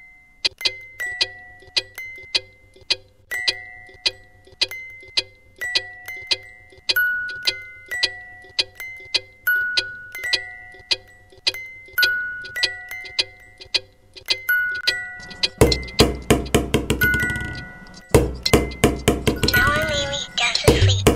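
A slow melody of chiming, bell-like notes, each struck and left to ring, about one or two notes a second. About three quarters of the way in, a fast, loud rattling run of low knocks breaks in over it, stops, and starts again shortly after.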